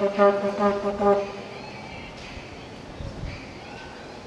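A low, steady note pulsing about six times a second stops about a second and a half in. Quiet street ambience follows, with a faint low rumble about three seconds in.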